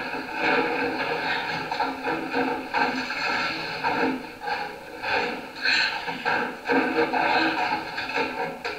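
A film's soundtrack played through theatre speakers and picked up in the auditorium: a steady mix of music and voices with no pauses.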